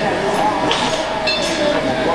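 Crowd of guests chattering in a large hall, with cutlery and glasses clinking.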